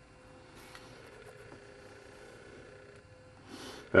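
Quiet room tone with a faint steady hum, and a brief soft noise near the end.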